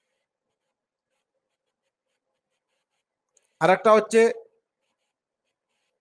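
Dead silence for about three and a half seconds, then a brief spoken fragment about a second long, then silence again.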